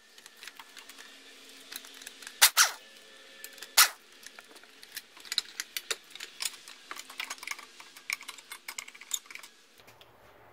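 Clicks, rattles and clinks of metal and plastic outboard parts and loose hardware being handled as the lower cowling and pull starter come off a small outboard. Two louder knocks come about two and a half and four seconds in.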